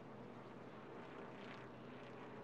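NASCAR Sprint Cup car's V8 engine running at speed, heard faintly and steadily through the in-car camera's microphone.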